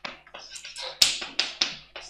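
Chalk writing on a blackboard: a run of short, sharp taps and scrapes as letters are written, the loudest tap about a second in.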